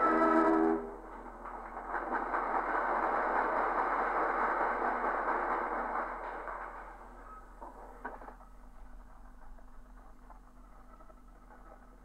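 A brass fanfare breaks off about a second in, followed by several seconds of audience applause that fades away, leaving the faint hiss and crackle of an old radio recording.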